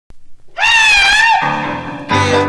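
Opening of a 1961 doo-wop novelty record: about half a second in, a loud, high, wavering falsetto cry rings out and bends down at its end, and the group's music takes over from it.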